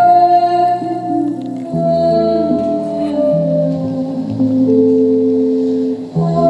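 Slow live acoustic ensemble music: a woman singing long held notes over acoustic guitars and double bass.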